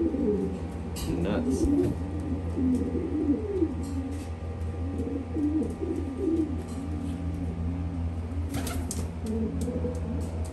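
Several homing pigeon cock birds cooing at once, overlapping low warbling coos that go on throughout, going crazy during pairing for breeding. A steady low hum runs underneath.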